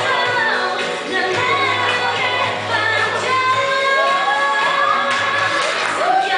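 Pop song with female singing over a steady backing track, with a sung note sliding upward near the end.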